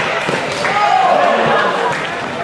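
Handball match in a sports hall: a ball bouncing on the court floor amid players' thuds and footfalls, with men shouting to each other and one longer call about a second in.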